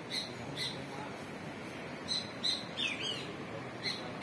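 A bird chirping: two short chirps near the start, then a quick run of chirps in the second half, some sliding down in pitch, over a steady background hiss.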